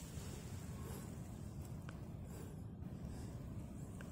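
Faint steady outdoor background: a low rumble with a thin high hiss and no clear event.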